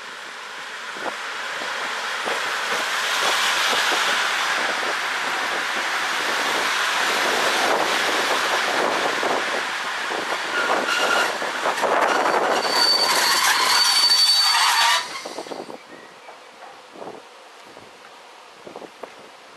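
NS Mat '64 electric stopping train running into the station and braking: the rolling noise of wheels on rails grows louder, high brake squeals come in over the last few seconds of its run, and the sound cuts off suddenly about fifteen seconds in as the train comes to a halt.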